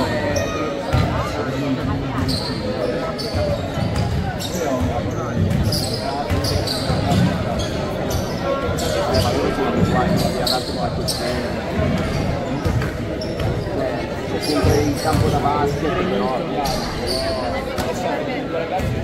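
Basketball bouncing on a wooden gym floor during play, over echoing voices in a large sports hall.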